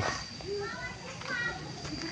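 Children's voices: short, high-pitched calls and chatter, a little way off, with no clear words.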